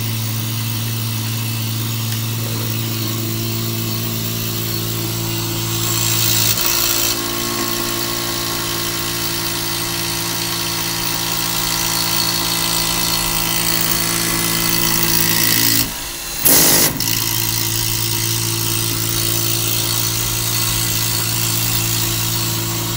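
Benchtop milling machine spindle running with a steady hum while the end mill cuts into a clamped block, throwing chips. The hum shifts pitch about six seconds in. About two-thirds through, the sound cuts out briefly, then comes a short, loud burst of cutting noise.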